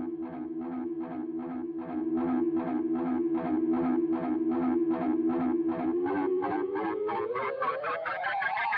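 Electric guitar through a tape delay pedal with the feedback high, the held note's repeats pulsing about three times a second. Near the end the pitch of the repeats glides steadily upward, the warble of a tape delay whose delay time is being turned down.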